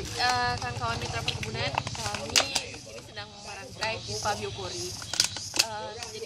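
Indistinct voices of several people talking, mixed with the sharp clicks and crackles of plastic drink bottles being cut and handled, several of the loudest snaps coming about two and a half seconds in and again past five seconds.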